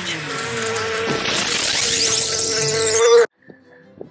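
Bees buzzing loudly and steadily, with a whooshing sweep that rises and falls in pitch. It cuts off abruptly a little after three seconds in.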